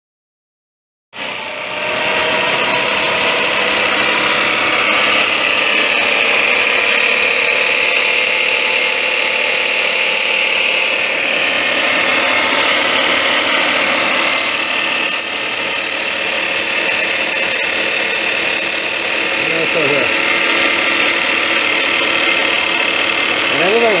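Black & Decker valve refacer's electric motor switched on about a second in and running steadily, a loud even machine whine.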